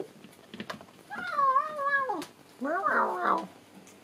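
A cat meowing twice: a long, wavering meow about a second in that falls away at its end, then a shorter meow that rises and falls.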